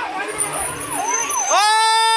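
Emergency vehicle siren sounding in quick sweeps, each rising and then dropping sharply, about three a second. About one and a half seconds in, a loud steady horn blast cuts in over it.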